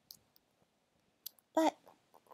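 A few faint, short clicks in near quiet, then a woman's voice says one word, 'But', near the end.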